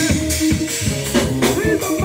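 A live church band playing a worship song: a drum kit keeping a steady beat under keyboard and a melody line.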